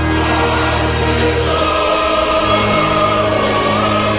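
Dramatic choral music: a choir holding long sustained chords, the harmony shifting about a second and a half in, with a held high note through the second half.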